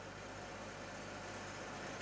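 Faint steady electrical hum and hiss from the microphone and sound system during a pause in speech.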